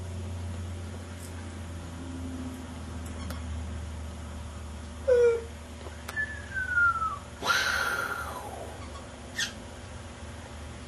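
Parrot calls over a steady low hum: a short falling squawk about halfway in, a falling whistle a second later, a louder harsh call with a falling pitch shortly after, and a brief high note near the end.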